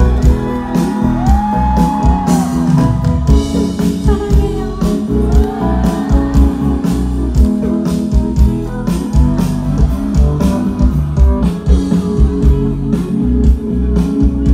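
Live band playing loudly: drums keep a steady beat under electric guitar, with a few bent notes.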